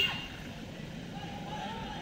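Steady low road-traffic noise with people's voices in the background, and a short sharp sound right at the start.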